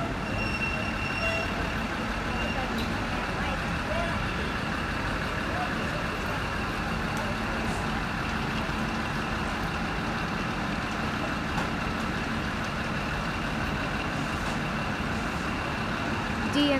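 Heritage diesel rail motor (DMU) running at the platform, a steady low engine drone with a faint high whine in the first few seconds.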